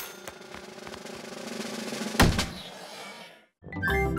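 Cartoon sound effect of a hammer striking a high-striker's button: a rising build-up for about two seconds, then one loud thump, fading into a brief silence near the end.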